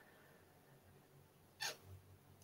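Near silence: faint room tone on a video call, with one short soft noise about one and a half seconds in.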